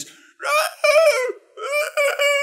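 A man's high falsetto voice imitating a creepy screech: two drawn-out high calls, the second starting just after the first ends.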